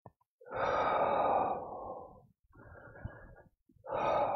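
A person breathing audibly through a pause in speech. A long, loud breath begins about half a second in and fades away, a shorter and quieter breath follows, and another long breath starts near the end.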